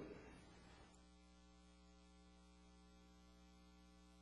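Near silence with a faint, steady electrical hum made of several even tones.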